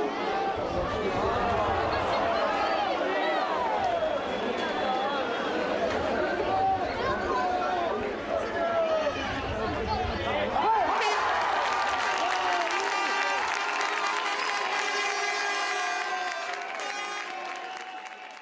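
Match crowd at a rugby league game: many voices shouting and calling during play, swelling into cheering and applause about eleven seconds in, then fading out near the end.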